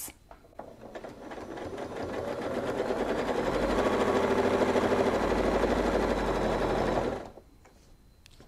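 Home sewing machine stitching steadily while quilting a curved arc along a ruler. It speeds up over the first couple of seconds, runs steadily, then stops abruptly about seven seconds in.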